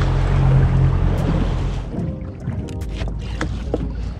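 A small boat's outboard motor running under way, with water and wind noise over it. About two seconds in it drops away, leaving a quieter stretch of light clicks with background music.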